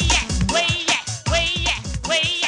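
Cartoon end-credits theme music: an upbeat track with a steady beat about twice a second under a high, wavering melody line.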